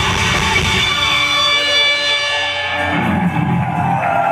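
Live metal band playing loud through the venue's sound system, with held guitar and synth notes. The deep bass drops away about halfway through and comes back near the end.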